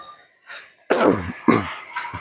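A man coughing: a short sound, then two coughs close together about a second in.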